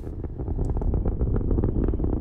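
Archival recording of a Saturn V rocket's engines firing: a deep, steady rumble thick with crackle, dull and muffled like old film sound.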